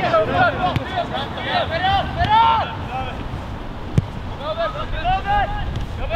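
Football players shouting to each other across the pitch in raised, high-pitched calls, in bursts at the start and again about five seconds in. A single sharp thump cuts in about four seconds in.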